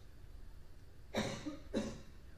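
A person coughing twice in quick succession, the two coughs about half a second apart, over quiet room noise.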